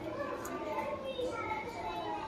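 Indistinct voices talking in the background, with what sound like children's voices among them.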